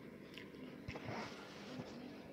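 Faint handling noise as the hair straightener's rubber power cord and plastic two-pin plug are picked up and turned over in the hands, with a light tap about a second in.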